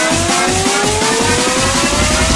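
Heavy-beat electronic dance music from a DJ mix: a steady, driving low beat under a tone that slowly rises in pitch, as in a build-up.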